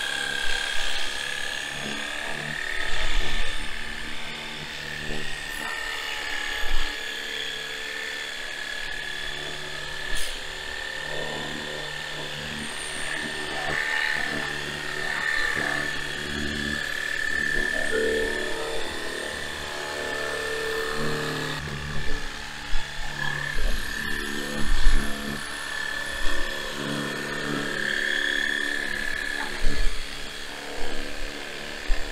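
Sunglife cordless battery-powered pressure washer (Hydroshot) running, its small pump motor giving a steady high whine as it sprays water onto a car's rear door jambs. There are several brief louder bursts, most of them late on.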